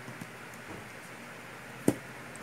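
Small clicks of wires and connectors being handled and joined, over a steady low hiss, with one sharp click near the end.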